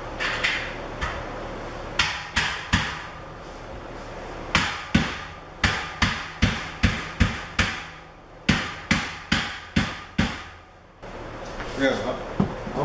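Rubber mallet striking the steel beams of a boltless shelving rack to seat them in the slots of the uprights. About fifteen sharp blows, two or three a second, in groups with short pauses between.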